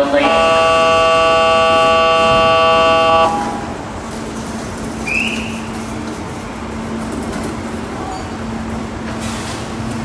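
Departure warning signal for a limited express: a loud, steady chord of several tones held for about three seconds, then cut off. A short rising chirp follows about two seconds later, over a low steady hum.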